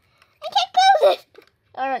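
A child's high-pitched voice in two short utterances: a loud one about half a second in and a shorter one near the end.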